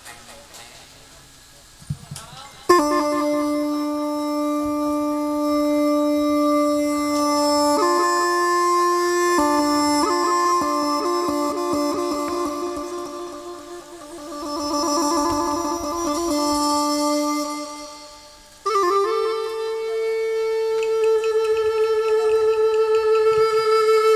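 Ritual music accompaniment: a reedy wind instrument plays a slow melody of long held notes that step from one pitch to the next. It comes in about three seconds in, after a few quiet seconds, and briefly fades twice before picking up again.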